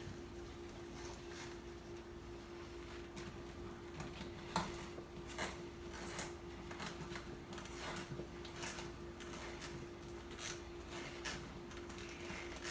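Faint clicks and rustles of gloved hands twisting a yellow wire nut onto three 12-gauge copper wires in an electrical box, the sharpest click about four and a half seconds in. A steady faint hum runs underneath.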